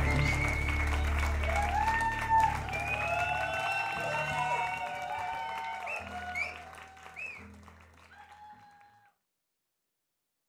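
Concert audience applauding and cheering, with cries that rise and fall in pitch, while a low final note from the band dies away in the first few seconds. The applause thins and fades out to silence about nine seconds in.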